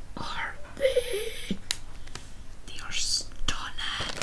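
Clear plastic bag of yarn skeins rustling and crinkling with scattered small clicks as it is handled, with a brief soft murmur of a voice about a second in.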